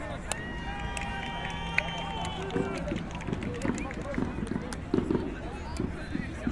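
Voices of people on the football pitch calling out, with one long held shout or call in several pitches over the first two seconds or so. Scattered sharp clicks run throughout.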